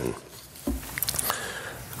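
A pause between spoken sentences: low room noise, with a soft low thump about two-thirds of a second in and a faint click about a second in.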